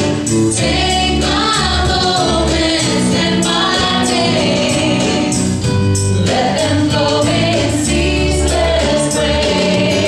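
A live church worship band playing: voices singing together over electric guitars, a drum kit and deep bass notes, with drum hits keeping a steady beat.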